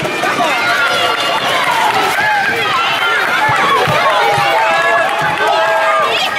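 Many children shouting and cheering at once, their voices overlapping, with the thuds of running feet on the hall floor.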